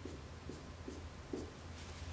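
Marker strokes on a whiteboard: short, evenly spaced strokes, about two a second, as small tick marks are drawn along an axis, over a steady low room hum.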